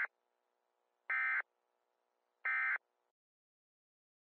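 A short, buzzy electronic alert tone sounding repeatedly, evenly spaced about 1.4 seconds apart: two full beeps, after one that is just ending at the start. It is styled as an emergency-broadcast test signal.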